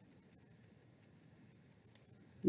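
Near silence: faint room hiss, with one short computer-mouse click near the end.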